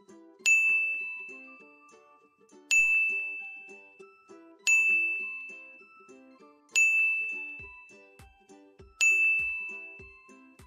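A bell-like ding sound effect sounds five times, about two seconds apart, each a bright high tone that fades slowly. It paces the learners' turn to read the five syllables aloud, one ding per syllable. Soft background music runs underneath.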